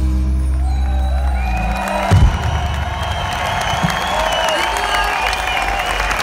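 Live band's closing low chord held and ending with a hit about two seconds in, then the crowd cheering and applauding with whoops and whistles.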